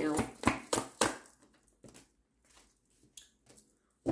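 Tarot cards being shuffled by hand: a quick run of sharp card snaps in the first second, then a few faint clicks of cards being handled.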